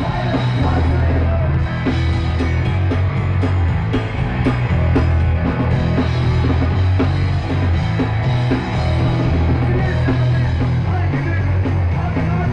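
Punk rock band playing live and loud: electric guitar, a heavy bass line and a steady drum beat.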